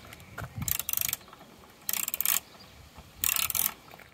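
Socket ratchet wrench clicking in three short bursts of rapid clicks, about a second apart, as a bolt in a motorcycle's tail fairing is wound in.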